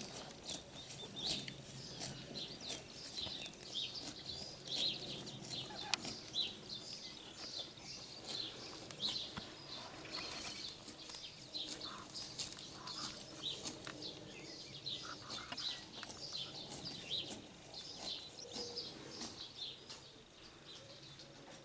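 Small birds chirping over and over, mixed with short, crisp tearing clicks of a cow cropping grass close by.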